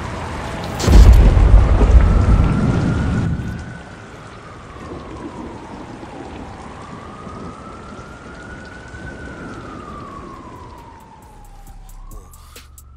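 Thunderstorm: a loud thunderclap about a second in, its rumble dying away by about four seconds, over steady rain. A siren wails slowly up and down through the rain.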